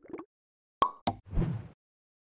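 End-card sound effects: two sharp clicks a quarter second apart, then a short pop that fades out quickly.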